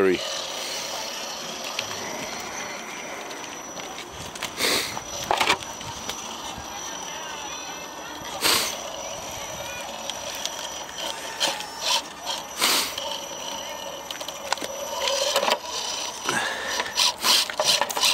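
An RC rock crawler working its way over rocks and gravel, with scattered sharp knocks and scrapes of its tyres and chassis on stone. Voices murmur in the background.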